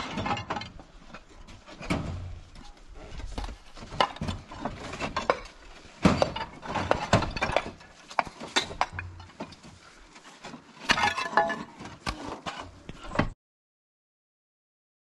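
Roof tiles clinking and knocking against one another and the trailer as they are loaded by hand into a small box trailer. It comes as irregular clatter, with louder bursts about six seconds in and again around eleven seconds.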